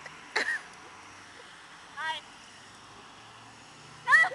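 Two short vocal sounds from people close by: a quick exclamation about half a second in and a brief high-pitched utterance about two seconds in, over a faint steady outdoor background.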